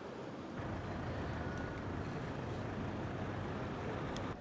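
A motor vehicle's engine running, a steady low rumble with street noise around it.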